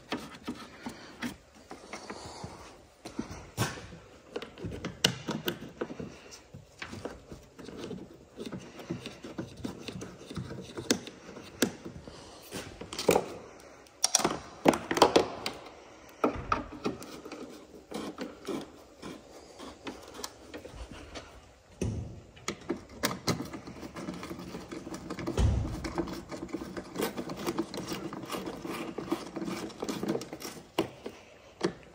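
Hands handling and refitting the plastic scuttle trim and rubber seal around a Mini's battery box: irregular plastic clicks and knocks, busiest about halfway through, with one dull low thump near the end.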